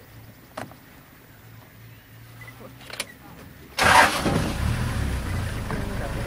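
Quiet at first, with a couple of faint clicks. About four seconds in, the safari vehicle's engine starts with a sudden loud burst and settles into a steady low running.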